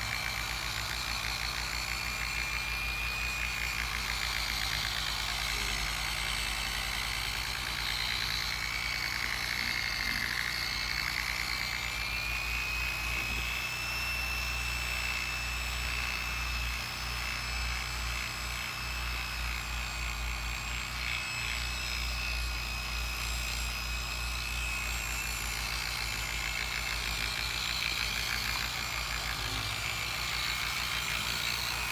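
Porter-Cable dual-action polisher with a foam pad running steadily as it spreads wax over a car's hood. Its motor whine dips and rises slightly in pitch over a steady low hum.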